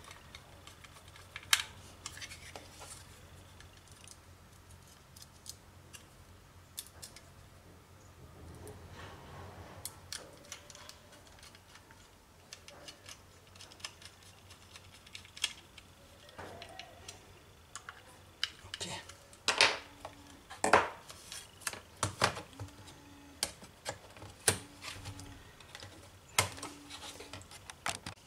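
Small screws being turned into a metal 2.5-inch drive caddy with a hand screwdriver, with light metallic clicks and scrapes as the screwdriver, screws and bracket are handled. The clicks come more often and more sharply in the second half.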